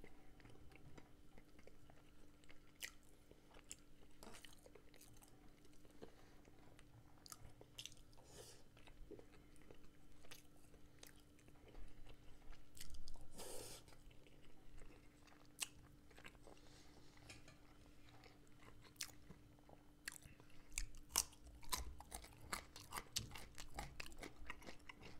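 Faint close-miked chewing of fried potatoes and chicken, with scattered wet mouth clicks. It gets louder briefly about halfway through and again in a run of quick clicks near the end.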